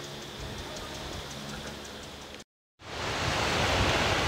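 Faint outdoor background hiss that cuts out completely for a moment about two and a half seconds in, then gives way to a louder, steady noise of wind blowing on the microphone.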